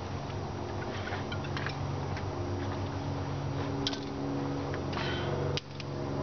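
A steady low mechanical hum with several light, sharp clicks and ticks scattered through it. The level dips briefly near the end.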